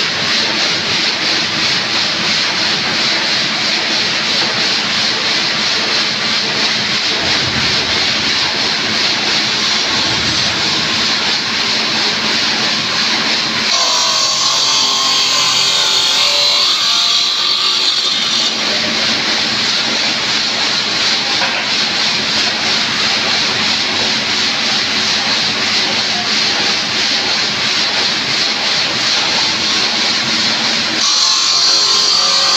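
Water-cooled stone-cutting saw running steadily through stone slabs, its electric motor and blade making a loud continuous hiss over a low hum. For about five seconds in the middle the hum drops away and the hiss turns brighter.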